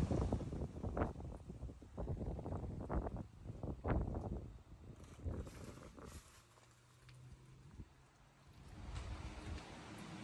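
Wind buffeting a phone's microphone in irregular low gusts, which fall away to near silence about six seconds in before a faint steady hiss returns near the end.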